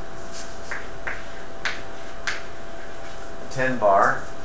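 Chalk tapping and scratching on a chalkboard, about five short, sharp strokes over the first two and a half seconds as a line of figures is written, over a steady hum. A brief voice sound comes just before the end.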